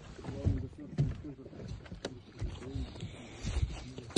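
Footsteps of someone walking over dry forest ground and grass, an uneven thump every half second to a second with the rustle of dry grass and needles underfoot.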